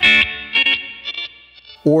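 A note picked on a Fender electric guitar through the Flamma FS03 delay pedal's 'Rainbow' mode. Its echoes repeat several times and fade away, each repeat stepping in pitch.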